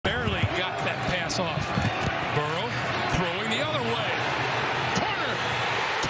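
Football stadium crowd noise on a TV broadcast: many shouting voices with a few sharp thumps in the first seconds, settling into a steady roar as the play develops.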